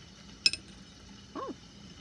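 A single sharp clink with a brief ringing, of small hard charms knocking together as one is drawn. A short spoken "oh" follows.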